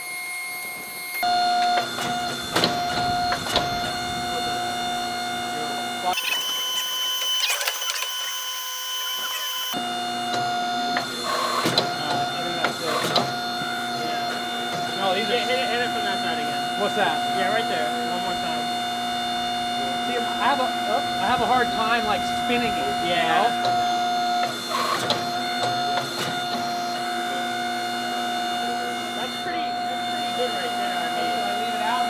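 Coal Iron Works 25-ton hydraulic forging press running, its pump holding a steady hum with a high whine, while it squeezes a hot steel billet square. The sound changes abruptly a few times.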